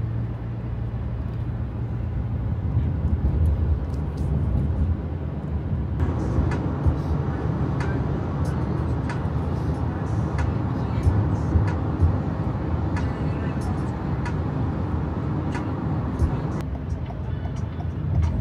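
Road and engine noise inside a moving car's cabin at freeway speed, a steady low rumble that turns louder and harsher from about six seconds in until shortly before the end.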